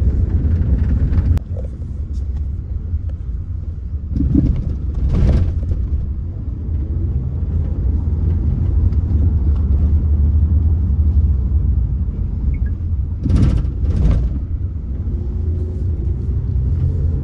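A steady low rumble, dropping suddenly in level about a second and a half in, with two short louder swells, one about four to five seconds in and one about thirteen seconds in.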